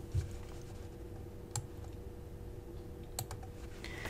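A few faint, sharp clicks, scattered singly through the pause, over a low steady hum and room noise.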